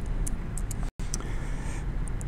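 Steady low background rumble of room and microphone noise, with a few faint clicks. The audio cuts out completely for a split second about a second in.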